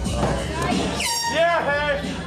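A loud, shrill, wavering shout from the crowd starts about a second in, its pitch rising and falling in quick arches. It sits over crowd chatter and bar music.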